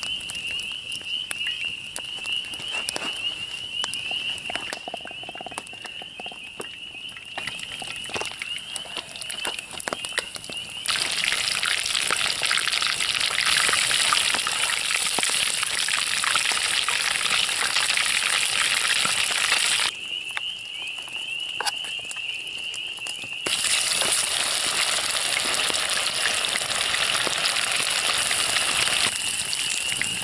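Campfire crackling under a cast-iron skillet, with a thin high tone in the background. About eleven seconds in, fish fillets sizzle loudly in hot oil in the skillet; the sizzle breaks off for a few seconds about twenty seconds in, then resumes.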